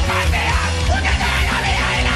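Loud, aggressive hard rock music with shouted vocals over a heavy, steady bass line.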